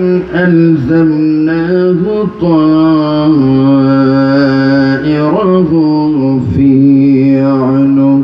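A man chanting Quranic recitation in long, drawn-out notes that slide from one pitch to the next.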